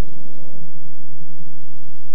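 A pause between spoken sentences, holding only a steady low hum with a faint hiss: room tone through the sound system.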